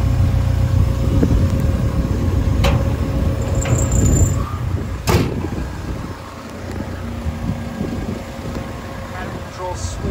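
Caterpillar 320 Next Gen excavator's diesel engine idling steadily, with a faint steady whine above the rumble. The idle is loud at first and grows quieter about halfway through. Two sharp clicks come in the first half.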